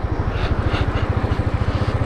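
Royal Enfield Thunderbird's single-cylinder engine running with an even low thump as the motorcycle pulls away from a stop onto the road.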